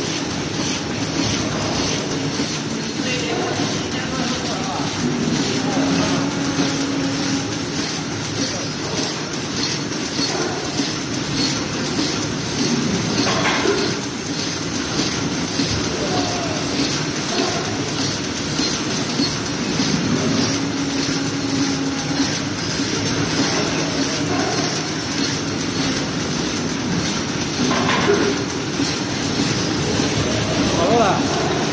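Automatic plastic-spoon feeding and flow-wrap packing machine running, with a steady, rapid, even mechanical clatter from its conveyors and sealing mechanism.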